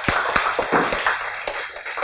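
A small audience applauding: many hands clapping at once.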